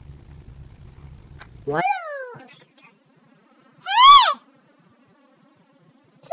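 A girl's squeaky, very high-pitched voice: a falling 'what again?' about two seconds in, then a short, louder squeal that rises and falls about four seconds in. A low hum runs underneath until the first call.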